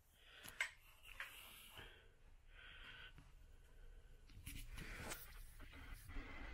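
Near silence: room tone with a few faint clicks and rustles.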